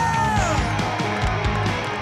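Rock band music with drums and bass under a long held high note that slides down about half a second in.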